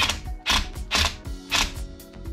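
Cordless impact driver run in short bursts, about four in two seconds, screwing a shouldered steel stud into a rubber Onewheel tire. The stud is stubborn and not biting into the rubber.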